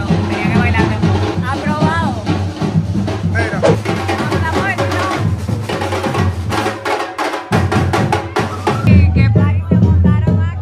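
Street percussion band playing a steady rhythm on hand-held drums and a bass drum, with voices in the crowd. The low drum notes drop out briefly about seven seconds in.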